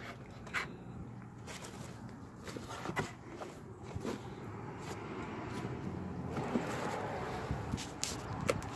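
Rummaging by hand through a cardboard box of baseball caps: soft rustling and scraping of fabric and cardboard, with a few scattered light knocks.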